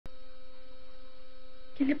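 Steady hum on an old film soundtrack: one constant pitch with an overtone above it, running without change. A voice starts speaking right at the end.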